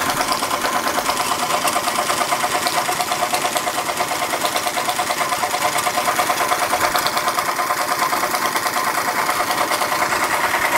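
Linemar Atomic Reactor toy steam engine running under steam with a fast, even beat, its small cylinder and flywheel turning steadily. It is running well and quietly.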